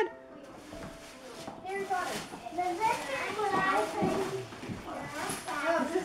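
Young children's voices and chatter in the background while presents are unwrapped, with rustling of wrapping paper and gift bags.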